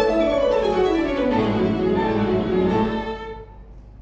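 Violin and grand piano playing classical chamber music. A run of falling notes fills the first half, and the music dies away in the last second.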